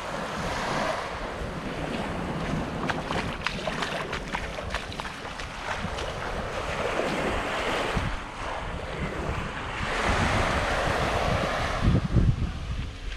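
Small waves washing up on a sandy shore, swelling and fading in several surges, with wind buffeting the microphone.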